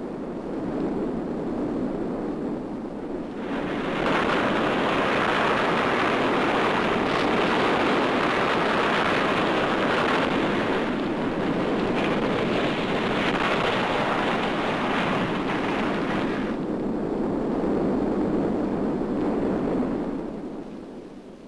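A steady rushing noise, like surf or a strong wind, standing for the sound of the advancing lava flow and eruption of Mount Vesuvius. It swells about three and a half seconds in and eases back a few seconds before the end.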